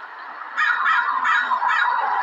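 A crow cawing: a rapid run of harsh calls starting about half a second in.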